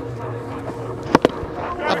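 Two sharp knocks about a tenth of a second apart, about a second in: a cricket bat striking the ball on a big swing.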